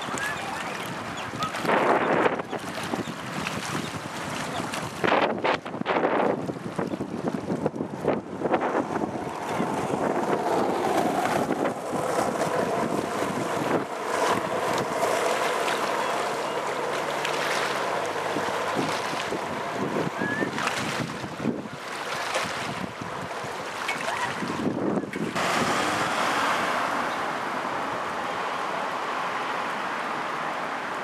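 Wind buffeting a microphone outdoors: a steady rushing with gusts, changing abruptly several times.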